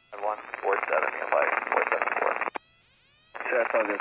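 Speech heard through an aviation headset intercom and radio, thin and narrow-sounding, in two stretches with a short pause about two and a half seconds in. The engine is not heard under it.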